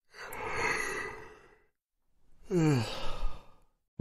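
A yawn: a long breathy intake of breath, then after a short pause a voiced 'aah' that falls in pitch.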